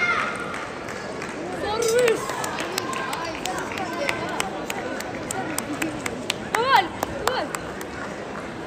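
Table tennis balls clicking off bats and tables as several matches go on at once, a string of sharp ticks over a steady murmur of voices, with a couple of high shouts partway through and near the end.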